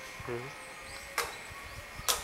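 A short murmured "hmm" from a person, then one sharp click about a second in.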